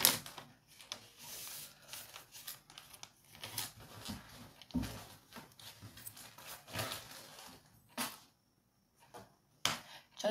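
Paper sheets being handled and rustled on a desk, with irregular crinkles, taps and clicks, and a dull knock about five seconds in.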